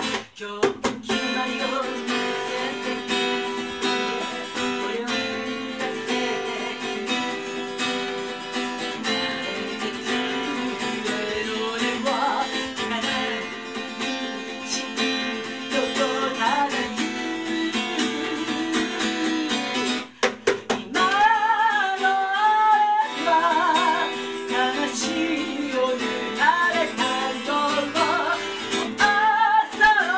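Acoustic guitar strummed and picked, with a woman singing over it; her voice is clearest in the last third. The playing breaks off twice for a moment, once just after the start and once about two-thirds of the way through.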